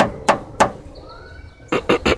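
Handling noise: about five sharp knocks and clicks, three in the first second and two close together near the end, as a hand moves hoses in the engine bay.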